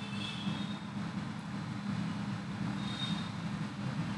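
Steady background hum with an even hiss, with no speech.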